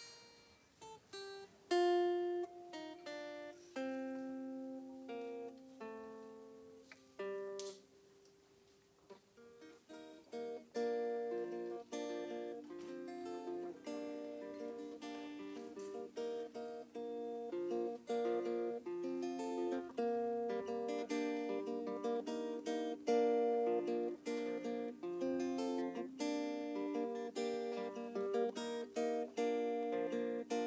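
Solo acoustic guitar playing an intro: slow single notes and chords left to ring for the first several seconds, then a steady rhythmic picked pattern from about ten seconds in.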